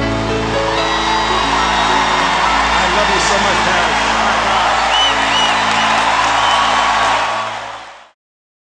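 A song's final chord held under audience cheering and applause, with a few whistles about five seconds in; it all fades out near the end.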